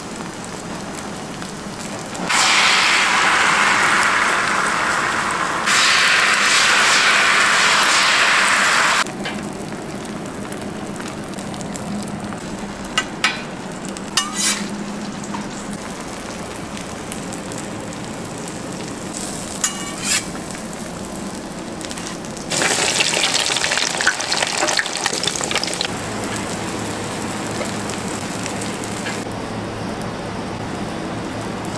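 Egg sheets frying on a hot flat-top griddle, sizzling steadily, with three much louder stretches of sizzling lasting a few seconds each. A few sharp clicks or taps come through in the middle.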